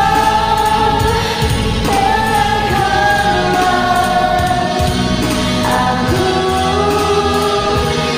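A woman singing a slow ballad in long, held notes that slide from one pitch to the next, over a karaoke backing track.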